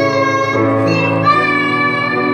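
Two young children singing a song together into microphones, holding long notes, over an electronic keyboard accompaniment; the melody steps up to a higher note about halfway through.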